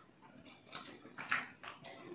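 A person chewing a bite of goli baji, a fried dough snack, dipped in chutney: a few faint, short mouth noises.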